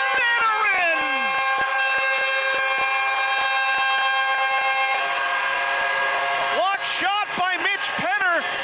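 Air horn sounding one long steady blast after a goal, fading out a little over halfway through. Near the end, a voice takes over.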